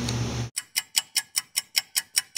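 Ticking-clock sound effect: a quick, even tick about five times a second, starting about half a second in when the room hum cuts out.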